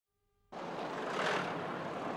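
Road traffic with a van passing close by, starting abruptly about half a second in; the sound swells briefly as the van goes past.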